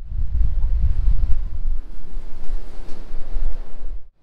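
Strong wind buffeting the camera's microphone on an open ship's deck: a loud, uneven low rumble that cuts off suddenly at the end.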